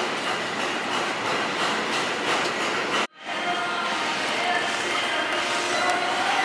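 Steady gym room noise, a dense hiss, cut off for an instant about three seconds in before carrying on as before.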